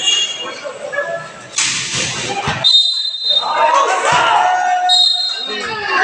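Spectators' voices and shouts around a basketball court during a free throw, with a loud burst of crowd noise about a second and a half in and two short high tones.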